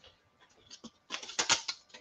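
Soft plastic crinkling and a quick run of small clicks, starting about halfway in: a comic book in a plastic sleeve being picked up and handled.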